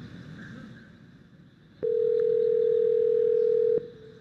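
Telephone ringback tone on a recorded outgoing call: one steady ring about two seconds long that starts and stops abruptly, the line ringing before the restaurant answers.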